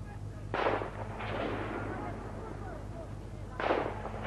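Two gunshots about three seconds apart, each followed by a rolling echo, over a steady low hum.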